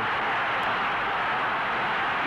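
Boxing-arena crowd noise from old fight footage, a steady roar after a knockdown.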